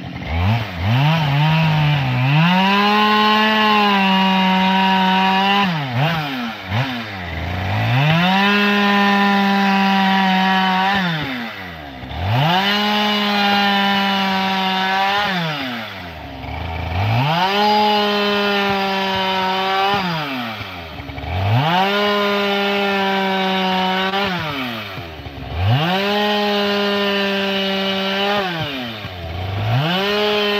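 Husqvarna 572 XP two-stroke chainsaw bucking firewood: six cuts of about four seconds each, the engine revving to full throttle, sagging slightly in pitch under load in the wood, and dropping back to idle between cuts.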